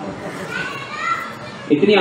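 Children's voices chattering faintly in the background, high-pitched, during a pause in a man's talk.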